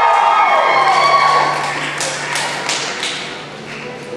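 A few audience voices whooping and calling out in a large hall as the graduate's name is called, then several short sharp hits, like claps, about two to three seconds in, before it dies down.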